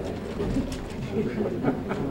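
Indistinct murmur of several people talking at once in a large room, with a few light knocks and shuffles among it.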